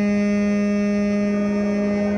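High school marching band's winds and brass holding one long, steady note.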